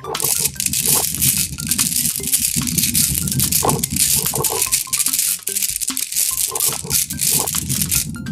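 A dense, loud clatter of many small gel water beads bouncing and rattling together on a hard surface, starting abruptly, with light music faintly beneath it.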